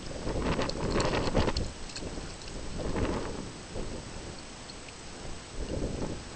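Water splashing and pouring from a toddler's plastic cup into a small inflatable wading pool, in three bursts, over a low steady rumble.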